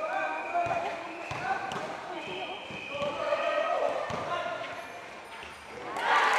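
A basketball bouncing a few times on a concrete court, under the shouting voices of players and spectators.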